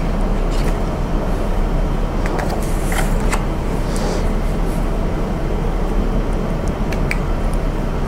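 Steady room noise: a low hum with hiss, with a few faint clicks scattered through it.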